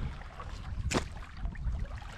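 Low rumble of wind and handling on a handheld camera's microphone, with one sharp click about a second in.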